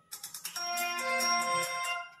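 A ringing, ringtone-like tone with several steady notes over a fast trill, lasting about two seconds. It shifts notes about half a second in and stops near the end.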